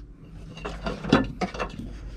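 A few small clicks and knocks, the loudest a little past the middle, from hands and a probe working at a car's interior dome-lamp fitting: plastic housing and metal contacts.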